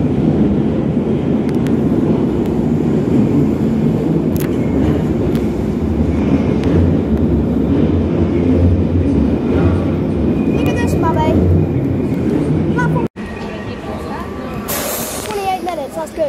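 London Underground Bakerloo line 1972 Stock train pulling out of the platform, a loud, steady rumble of wheels and traction motors as it runs past close by. The rumble cuts off abruptly about thirteen seconds in.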